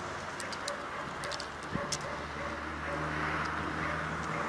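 A cat's claws scratching and clicking against tree bark as it climbs, the clicks coming in small clusters in the first two seconds. Behind them is a low steady hum and soft bird cooing.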